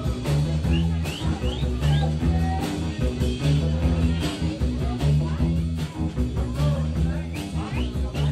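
A live band playing: electric guitar over bass and drums, with a steady beat and a strong, repeating bass line.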